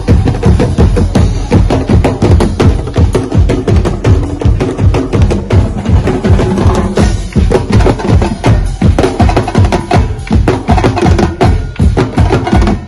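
Percussion ensemble of drums and wooden blocks beaten with sticks, playing a fast, steady driving rhythm.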